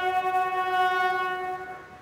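A wind band of brass and woodwind instruments holds one long sustained chord, which fades away about one and a half seconds in.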